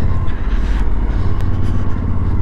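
Suzuki V-Strom motorcycle engine running steadily at low road speed on a gravel dirt road, with a low hum and a haze of wind and tyre noise over it.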